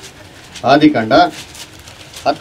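A man speaking one short phrase, starting about half a second in and lasting under a second.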